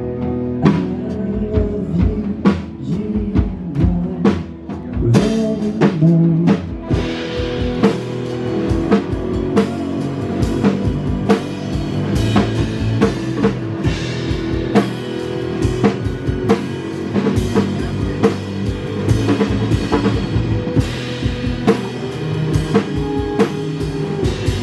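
A live rock band plays on stage: a drum kit keeps a steady beat under electric guitars. About five seconds in, cymbals come in and the band plays fuller.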